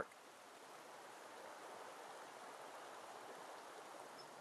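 Faint, steady rush of a shallow creek running over riffles.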